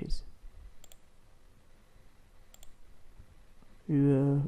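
Computer mouse button clicking twice over quiet room tone, once just under a second in and again a little past halfway.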